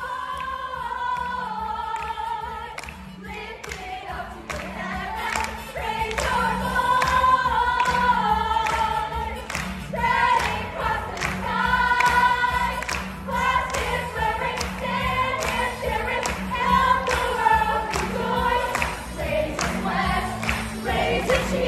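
A group of young voices singing a musical-theatre number together over a recorded backing track with a steady beat.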